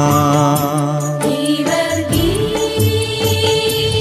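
Devotional-style music with a steady low drone under a slow melody line; about two seconds in, a note glides up and is held, over light percussion.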